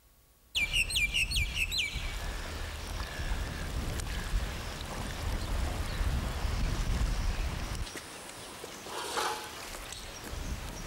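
A bird gives about five quick chirps in a fast run, starting suddenly about half a second in, over a low steady rumble of outdoor noise that drops away about eight seconds in.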